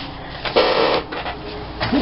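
A book being handled and moved across a tabletop: a brief scraping rustle about half a second in, followed by softer rustling of pages and covers.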